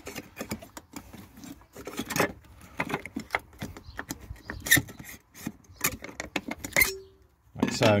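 Aluminium seat rails in a VW California's floor being slid forward and lifted off by hand: a run of small metallic clicks, knocks and rattles.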